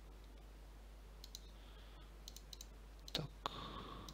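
Faint computer mouse clicks in two short runs, one a little over a second in and one around two and a half seconds in.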